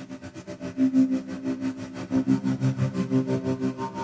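Sampled strings from the LORES virtual instrument (cello on a fast circular-bow articulation layered with nyckelharpa and double bass) holding a low chord. A volume LFO makes the chord pulse about six times a second, and the pulses get louder about a second in.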